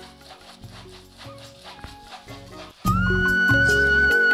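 Background music: a quiet track with a light, regular beat, then a much louder section starts suddenly near the end, with a high held melody and strong bass.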